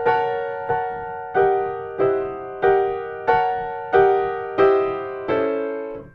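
Piano chords of the 4-17 major/minor set, struck nine times at an even pace, about one every two-thirds of a second. Each chord rings and fades before the next, and the voicing changes twice, a little over a second in and near the end.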